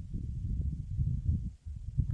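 Wind buffeting the microphone: an uneven low rumble that comes and goes in gusts, with a brief dip about one and a half seconds in.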